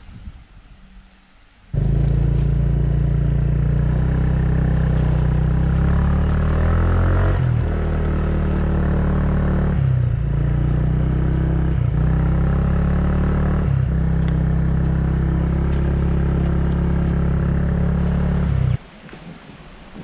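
Motorcycle engine running while being ridden, a loud steady note that dips briefly four times. It cuts in abruptly about two seconds in and stops abruptly near the end.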